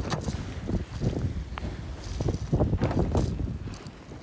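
Wind buffeting the microphone on the deck of an IMOCA racing yacht under sail: a steady low noise, with a few sharp knocks near the start and again past the middle.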